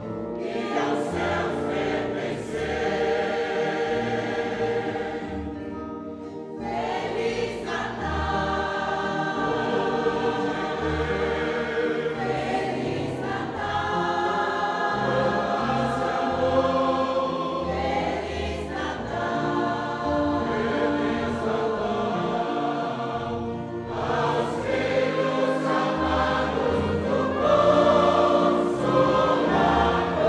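Choir singing a hymn in long held phrases over a low bass accompaniment, with a brief break about six seconds in and growing louder near the end.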